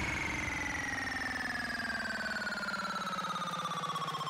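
Breakdown in an electronic dance music set: the beat and bass are gone, leaving a single synthesizer tone sliding slowly and steadily down in pitch with a fast flutter.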